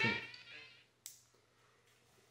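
One sharp click about a second in, from the Baofeng UV-5R handheld radio being handled at its top knob, then quiet.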